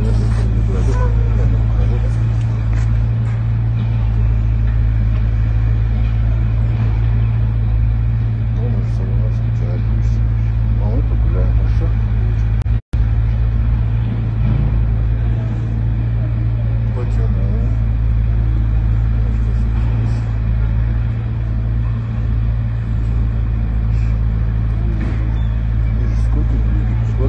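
A loud, steady low rumble under faint, indistinct voices, cutting out briefly about halfway through.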